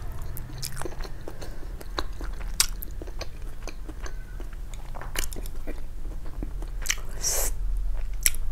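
A person chewing a mouthful of stir-fried instant noodles: irregular wet mouth clicks and smacks, with a short breathy hiss near the end.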